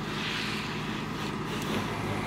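Fire pumper truck engines running, a steady drone with hiss over it.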